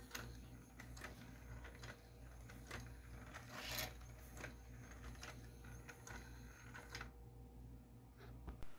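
3D-printed four-legged walking toy driven by a 3-volt, 30 RPM N20 gear motor, walking on a wooden tabletop: faint clicks and taps of its plastic gears and feet about two a second, with one longer, louder scrape near the middle.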